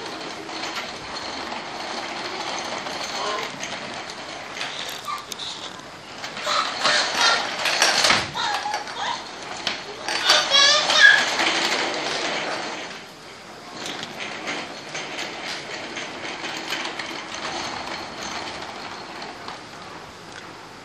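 Plastic wheels of a baby walker rolling and rattling over a hardwood floor, with wordless voice sounds, loudest and rising in pitch between about six and twelve seconds in.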